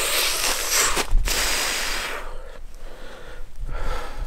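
A person breathing hard close to the microphone: a long breathy rush for about two seconds, then quieter.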